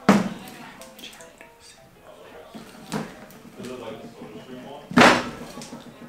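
A glass whiskey bottle knocked down onto a wooden bar top just after the start and a lighter knock about three seconds in, then the bottle's cork stopper pulled out with a loud pop about five seconds in. Faint background music runs underneath.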